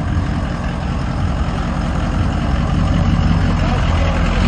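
Lifted Ford F-250 pickup's engine running at idle, a loud, steady deep rumble that builds slightly.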